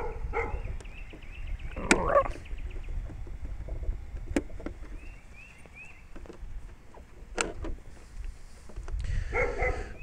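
Sharp plastic clicks from the Redcat Wendigo RC truck's body and loose battery being handled, a few single clicks spread across the stretch, over a low wind rumble on the microphone.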